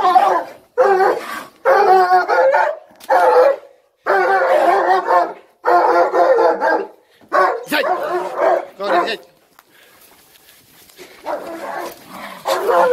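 Young German shepherd barking and snarling at a cornered raccoon in about eight harsh bursts, then a short lull about nine seconds in and quieter sounds near the end.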